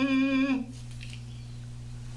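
A small mouth-blown instrument held at the lips plays one held, slightly wavering note that stops about half a second in. A quieter, steady low drone carries on after it.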